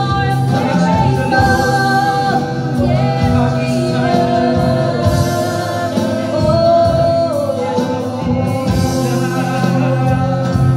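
Live praise-and-worship music: a man and a woman singing into microphones over acoustic guitar, electric guitar and keyboard, with long held notes.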